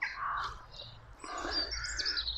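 Birds calling faintly, a few short calls with higher chirps near the end.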